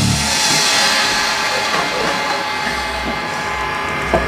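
A rock band's final chord ringing out: cymbal wash and sustained electric guitar tones slowly dying away after the song's last hit.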